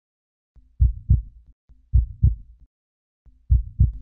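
Heartbeat sound effect: three low double thumps (lub-dub), the two thumps of each beat about a third of a second apart and the beats a little over a second apart.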